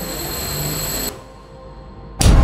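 A bench grinder grinds a metal tool, with a steady high whine under background music. The grinding cuts off abruptly about a second in, leaving quieter music.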